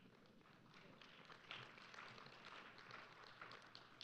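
Near silence, with faint, irregular tapping and clicking starting about a second in.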